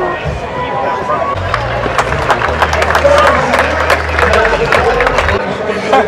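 Spectators chattering in a tennis stadium with music playing over them, and a scatter of short sharp clicks through the middle seconds.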